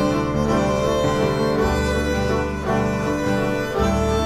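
A violin and a cello playing a duet with long bowed notes, the cello holding low notes beneath the violin and moving to a new low note twice.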